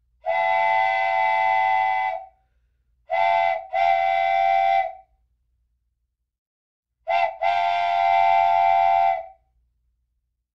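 Train whistle blowing: one long blast of about two seconds, then two short-long pairs of toots, each steady in pitch with several tones sounding together.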